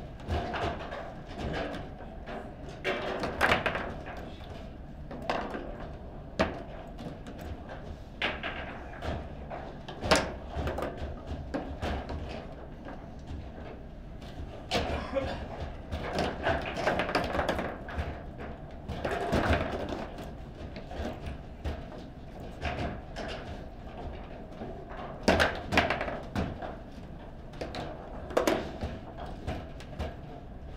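Table football in play: the ball being struck by the players' figures, with rods banging against the table, heard as sharp clacks and thuds at irregular intervals, some in quick clusters.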